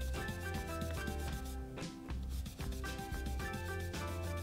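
A Stampin' Up! blending brush rubbing ink onto cardstock in quick repeated strokes, a soft scratchy rasp, over quiet background music.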